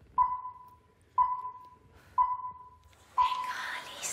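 Electronic countdown beeps: four identical short, mid-pitched beeps exactly one second apart, each fading quickly, with a hiss building under the last one.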